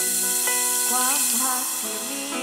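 Live band music from a Thai sound-truck band, with keyboard and electric guitar playing. A bright hissing wash comes in sharply at the start and dies away over about two seconds.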